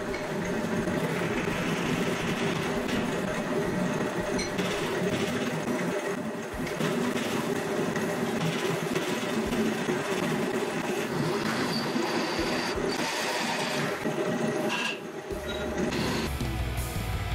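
Drill press running, its twist bit cutting into a flat steel bar clamped in a drill press vise: a steady motor hum with the grind of the cut. There is a short break about six and a half seconds in.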